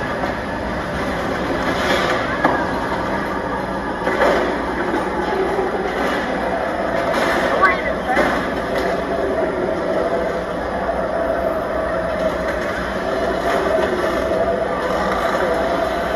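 The Megasaurus car-eating robot dinosaur's machinery runs steadily with a constant whine as its jaws grip a car, with a few faint knocks. Crowd voices can be heard underneath.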